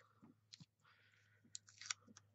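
Faint clicks, then a short crackle near the end, as sticky foam pads are peeled off their backing strip, over a low steady hum.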